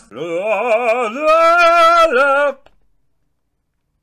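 A male singing voice holding one long note with vibrato, stepping up slightly in pitch about a second in, then cut off abruptly after about two and a half seconds.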